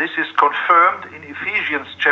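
A man speaking over a video-call link, his voice thin and cut off at the top like a phone line.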